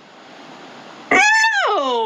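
A woman's voice: after a second of faint hiss, a loud drawn-out 'oooh' wail that starts very high and slides steadily down in pitch.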